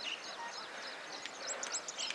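Small birds chirping: many quick, high, overlapping chirps, with a busier run of them about a second and a half in.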